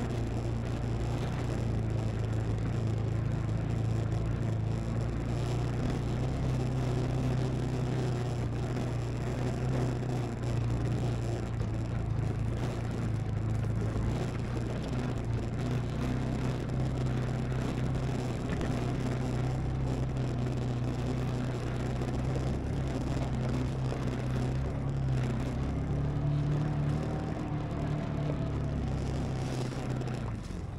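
BigHorn 550 side-by-side UTV's engine running steadily under load, a constant low drone as it climbs a steep, rocky hill trail. Its pitch rises a little near the end before the sound eases off.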